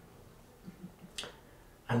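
A pause in a man's reading aloud. A few faint low sounds, then one short, sharp click a little over a second in.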